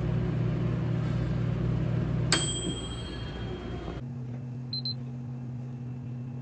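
American Home microwave oven running with a steady hum, and its bell dings once a little over two seconds in as the cycle ends. After a cut, a quieter steady room hum takes over, with a brief high beep about a second later.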